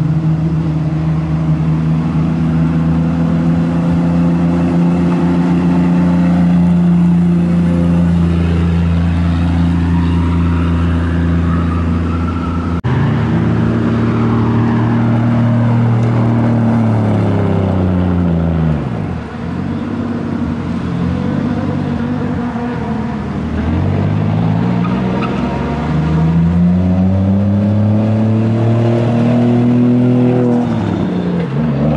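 Engines of two modified Toyota sedans, one after the other. The first runs at steady revs; after a sudden change about 13 seconds in, the second's revs drop and then climb again near the end.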